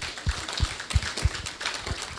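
Audience applauding: many hands clapping in a dense patter, with louder dull thumps about three times a second.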